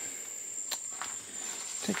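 Steady high-pitched insect trill, with two brief clicks near the middle.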